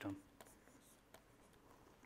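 Near silence, with a few faint taps and scratches of a stylus drawing on a pen tablet. The tail of a spoken word ends the moment it begins.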